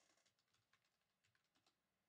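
Near silence, with a few faint, scattered clicks from trading cards being handled.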